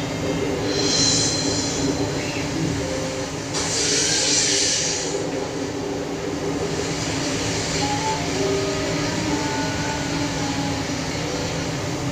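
Water jets of a dancing fountain rushing steadily, with surges of spray hiss about a second in and again around four seconds in, over music from the show's loudspeakers.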